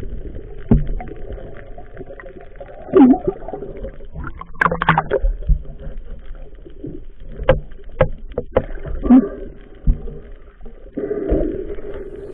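Muffled underwater noise picked up by a diver's camera, with scattered sharp knocks and clicks and two short low sounds that dip in pitch, about three and nine seconds in.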